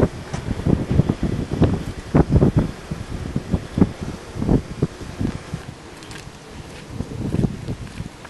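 Wind buffeting the camera microphone in irregular gusts, a low rumble that swells and drops.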